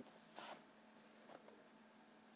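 Near silence: faint room tone with a steady low hum, broken by a brief faint rustle about half a second in and a softer one a little later.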